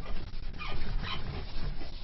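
Chalkboard eraser rubbing on the slate with a couple of short squeaks, the first falling in pitch about half a second in and another just after a second.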